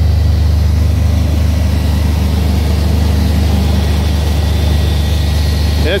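The 4.3-litre engine of a 1986 Maserati 4x4 concept car idling steadily with its hood open, a constant low drone.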